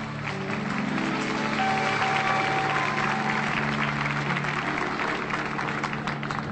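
Studio audience applauding over a band playing long held chords.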